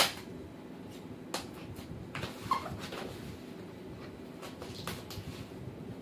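Scraping, tapping and rustling of a tape-wrapped cardboard parcel being worked open by hand, a run of short, irregular knocks and scrapes with the sharpest one at the very start, over a steady low hum.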